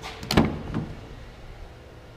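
A 2016 Buick Encore's rear door being opened: a click at the handle, then a sharp clack of the latch releasing about half a second in, dying away quickly.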